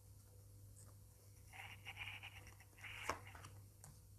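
Faint rustling and scraping of handled cards about halfway through, with a single light click near the end, over a steady low hum.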